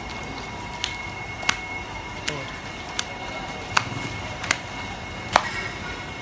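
A large live fish flopping on a wet concrete floor, its body slapping the ground in about seven sharp smacks, roughly one every three-quarters of a second.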